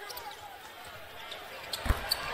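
A basketball bouncing on a hardwood court, with one loud bounce near the end, over faint arena background and distant voices.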